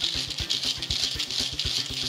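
Hand-crank dynamo keychain torch being wound: its small gearing gives a steady high-pitched whirring rattle while the crank handle is turned, charging it to make the light brighter.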